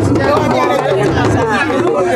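A dense crowd talking and calling out all at once, many voices overlapping in a loud, continuous babble.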